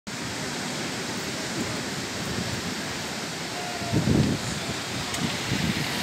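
Steady, even wash of surf breaking on a sandy beach, with a brief louder low buffeting about four seconds in.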